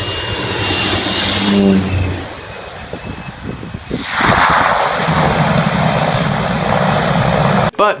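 Single-engine propeller bush plane flying low overhead: loud engine and propeller noise that builds to a peak as it passes over, dips, then swells loud again from about four seconds in before cutting off abruptly.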